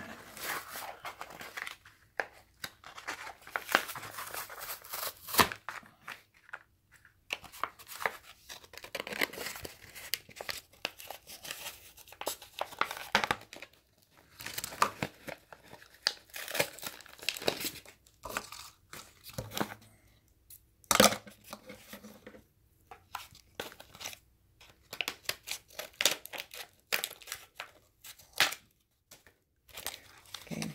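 Plastic bag of a die-cut paper sticker pack crinkling and tearing as it is opened by hand, in irregular rustles and rips, with one sharper, louder rip about two-thirds of the way through.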